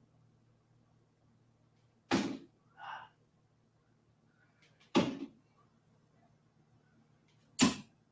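Three darts striking a miniature Winmau Blade 6-style dartboard (the Dart Dock) mounted on a wall. Each hit is a single sharp thunk, about two and a half seconds apart.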